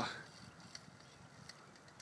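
The end of a man's spoken phrase, then quiet open-air background hiss with a few faint ticks.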